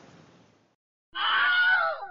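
Faint room noise fades out, then a loud animal-like screech starts about a second in and lasts about a second, ending abruptly.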